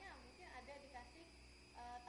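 Faint, indistinct speech with a woman's voice, over a steady low hum.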